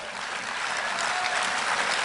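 Audience applauding, many hands clapping in a dense, even patter that grows a little louder toward the end.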